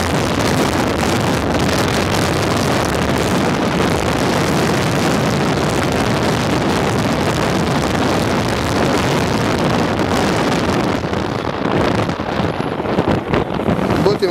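Wind buffeting the microphone over the running engine and road noise of a moving vehicle, loud and steady. It becomes uneven in the last few seconds.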